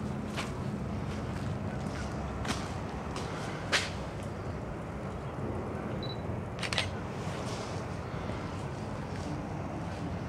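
Handling noise of a handheld camera: a few sharp clicks, the loudest a little under four seconds in, over a steady low rumble of wind on the microphone.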